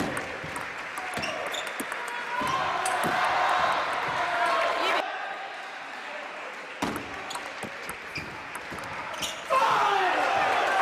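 Table tennis rally: the ball clicks sharply off the rackets and the table in quick succession, with voices in the hall and a loud shout near the end.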